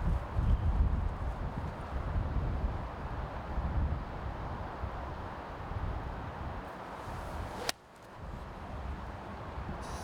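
Golf eight-iron striking the ball on a full approach shot: one sharp click about two seconds before the end, heard over a steady low rumble.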